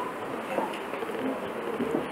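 Steady faint background noise with a light buzzing hum, no voice.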